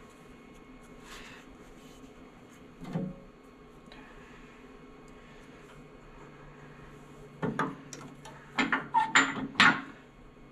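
Metal clanks and knocks from setting up a wood lathe: a single knock about three seconds in, then a rapid cluster of sharp clanks with brief metallic ringing in the last few seconds as the tool rest is handled and positioned.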